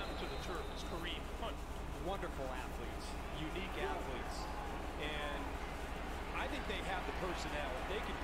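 Faint TV play-by-play commentary from an NFL broadcast playing in the background, over a steady low hum.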